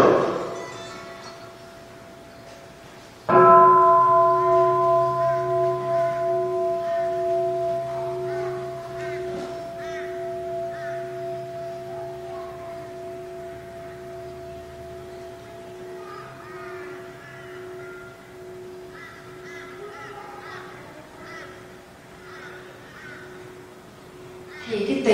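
A meditation bowl bell struck at the start and struck again fully about three seconds in, then left to ring out: a steady pitched tone with several overtones and a slow wavering pulse, fading gradually over about twenty seconds.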